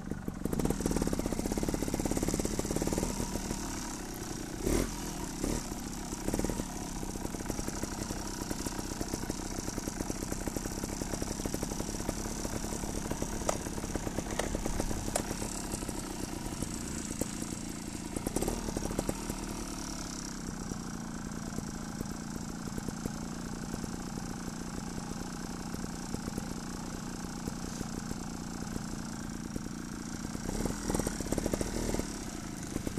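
Trials motorcycle engine running with bursts of throttle, loudest in the first few seconds, then settling into a steadier run.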